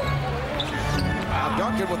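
A basketball dribbled on a hardwood court during live play, over arena music.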